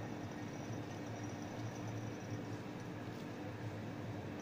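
Steady low electrical hum with a faint hiss: room noise of lab equipment or a fan, with no distinct event.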